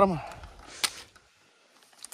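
A brief plastic rustle and one sharp click about a second in, from handling a plastic bag of black screw-on electric-fence post connectors.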